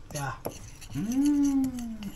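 A person's voice: a brief sound, then one drawn-out vocal sound held steady for about a second near the end.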